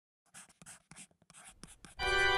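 Faint scratching of a pen nib on paper in short, irregular strokes, a writing sound effect.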